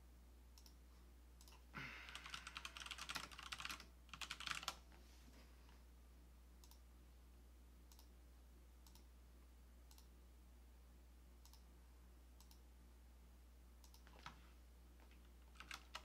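Computer keyboard typing in a quick, dense burst starting about two seconds in and lasting nearly three seconds, followed by a few scattered single clicks. A low steady hum sits underneath.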